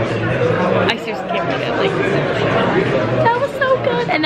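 Overlapping voices and chatter of people in a busy restaurant dining room, with one brief sharp click about a second in.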